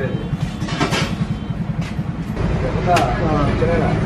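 People talking in the background over a steady low rumble, with voices louder from about three seconds in.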